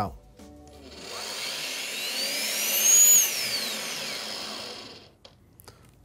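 FEIN KBC 36 compact mag drill's brushless motor spinning up with a rising whine about a second in, then cutting out and winding down with a falling whine. This is the tilt sensor stopping the machine when it is moved suddenly.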